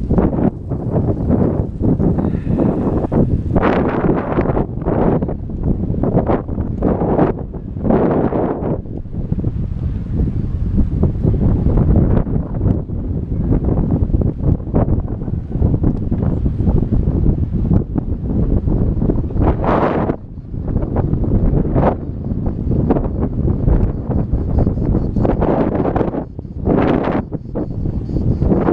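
Wind buffeting the microphone of a camera carried on a moving bicycle, a loud, gusty rumble that surges and eases over and over.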